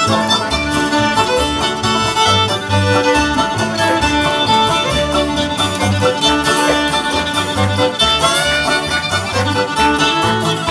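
Live acoustic string band playing an instrumental country break: a fiddle leads over strummed acoustic guitar and a plucked upright bass keeping a steady beat.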